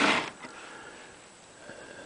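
A short sniff or breath close to the microphone right at the start, then faint room hiss.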